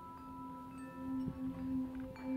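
Soft background music of long, ringing chime-like tones held over one another, the lowest tone swelling and fading.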